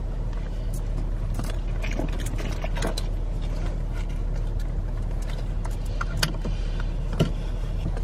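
Steady low rumble inside a car's cabin, with scattered light clicks and taps; the sharpest clicks come about six and seven seconds in.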